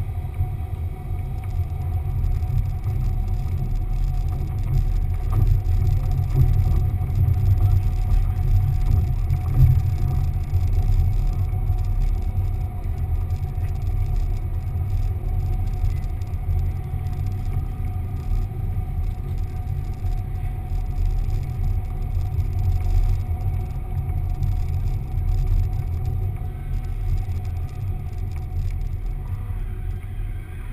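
Car driving slowly, heard as a heavy, steady low rumble of engine and road with a faint steady hum, picked up by a camera mounted on the outside of the car.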